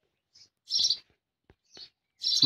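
A bird chirping in the background: a few short, high chirps, the clearest a little under a second in, with a faint click about a second and a half in.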